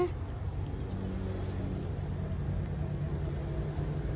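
A steady low engine hum with a faint pitched drone that grows a little stronger about a second in, the sound of a motor vehicle running.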